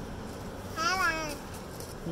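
A toddler's high-pitched wordless squeal, one short call about a second in, its pitch arching up and down.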